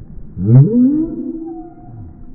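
A small dog's warning call, played slowed down so that it comes out as a deep moan. It rises steeply in pitch about half a second in, holds for about a second, then fades.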